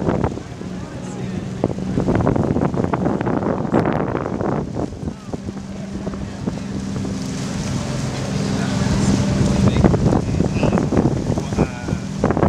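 Wind buffeting the microphone in irregular gusts over a steady low engine hum, with small waves washing against the shoreline rocks.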